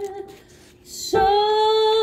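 A woman's voice singing long held notes in a soprano part. One note ends just after the start, a short breath and a brief hiss follow, and a new note begins about a second in and is held with a slight vibrato.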